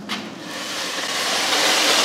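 A short click, then a rushing hiss that grows steadily louder.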